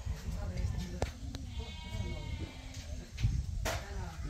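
Sharp clicks of red amaranth stems being cut on a boti blade, twice about a second in, with a long wavering animal call of about two seconds in the middle and a short loud rustle near the end, over a low steady rumble.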